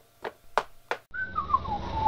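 A few light taps, about three a second, in keeping with cartoon footsteps. Then a short whistle that falls in pitch with a slight waver.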